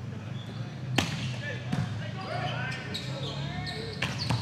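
Indoor volleyball rally in a gym hall: a sharp smack of the ball about a second in, then players calling out on court, with another ball contact near the end.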